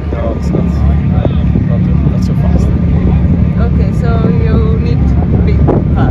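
Two people talking in conversation over a loud, steady low rumble.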